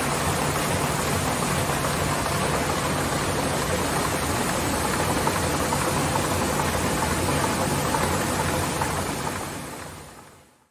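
Heidelberg-Stahlfolder TH 82/644 buckle folding machine running: a steady mechanical rush of rollers and paper sheets feeding through the folding units, over a low hum with faint regular ticking. The sound fades out near the end.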